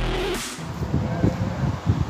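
Electronic background music cuts off about half a second in. It gives way to a low outdoor rumble with scattered short rustles and knocks.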